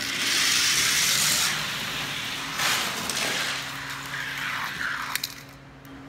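Three die-cast toy cars rolling fast down a plastic drag-race track, a loud rolling rattle that eases and swells again before fading out. A couple of sharp clicks come about five seconds in, over a faint steady hum.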